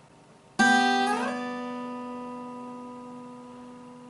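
Acoustic guitar: the first string, fretted at the third fret, and the open second string are plucked together about half a second in. The first-string note then slides up to the tenth fret while the open second string rings on, and both fade slowly.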